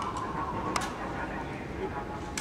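A squad of ceremonial guards moving their rifles in unison during drill, heard as one sharp clack about three-quarters of a second in. Voices murmur underneath.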